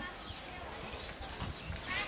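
Faint eating sounds: chewing and small ticks of spoons against ceramic plates.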